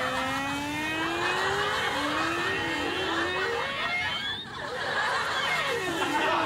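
Comedy sound effect: a long sliding, creaking tone that slowly rises, wavers and falls in pitch, with a short break a little after four seconds, laid over a metal bar being drawn out longer and longer from a door.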